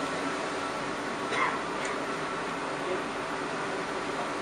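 Steady machine noise from sewer-jetting equipment running while it cleans a drain line. Two short sounds come about a second and a half in.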